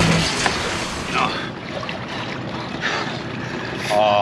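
Water sloshing and lapping around a man in the water beside a small boat's hull, with wind on the microphone and faint voices.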